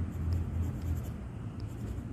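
Pencil scratching on sketchbook paper during quick sketching, over a low steady hum.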